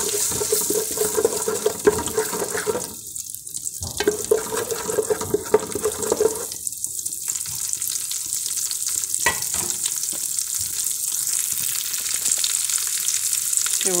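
Garlic frying in pork lard in a metal pot, sizzling steadily, while a utensil stirs it and now and then knocks against the pot.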